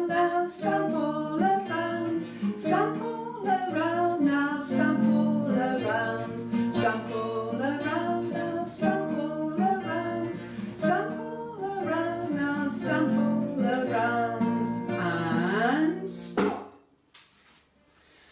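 A woman singing a children's action song to a strummed acoustic guitar, with a steady beat. About 16 seconds in, voice and guitar stop together abruptly, the song's "stop" freeze cue, leaving a near-silent pause.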